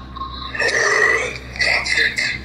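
A harsh, raspy guttural noise in two bursts, coming over a video call from the masked caller: a growl-like response to being insulted.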